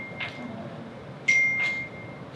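A clear high ringing ping, as of something small and hard being struck, fading out; then a second identical ping a little past the middle that rings for about a second. A few soft clicks fall between them.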